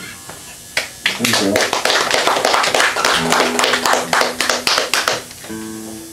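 Small audience applauding for about four seconds after an acoustic song, starting about a second in as the last guitar chord fades; a few plucked acoustic guitar notes come in near the end.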